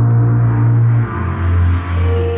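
Loud background music with deep sustained bass notes; the bass note shifts lower about a second in.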